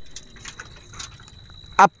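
Faint light clicking and rattling under a thin, steady high-pitched whine, in a pause between spoken words. A short word cuts in near the end.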